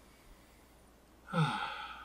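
A man's long, deliberate sigh near the end, starting on a short falling voiced note and trailing off into breath. It is a calming exhale after breathing in the scent from an open jar.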